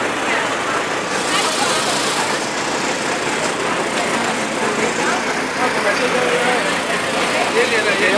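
Steady city-street noise: a constant wash of passing traffic and background voices of people talking.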